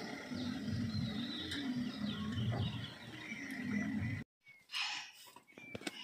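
Birds chirping in short, high calls over a low background rumble, cutting off abruptly about four seconds in.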